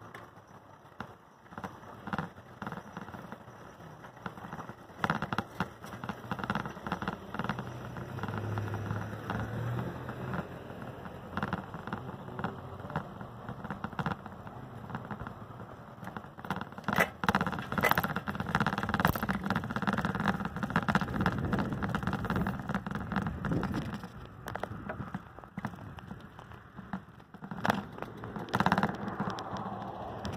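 Rolling noise of a ride along a street: wheels running over asphalt, with many small rattling clicks. It gets louder and rougher from about halfway through.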